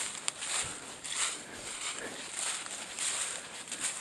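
Footsteps crunching through dry fallen leaves at a steady walking pace, about two steps a second, with a sharp click shortly after the start.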